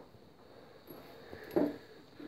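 Mostly quiet room sound with a faint hiss. A brief voiced murmur from a man, like a hesitation sound, comes about one and a half seconds in.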